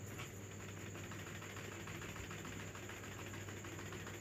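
Domestic sewing machine running, stitching through layered cloth with a faint, steady, even clatter of stitches.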